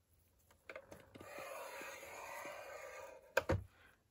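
Scoring tool drawn along the groove of a paper scoring board through a sheet of designer paper: a faint steady scrape lasting about two seconds, then a couple of sharp clicks near the end as the tool knocks against the board.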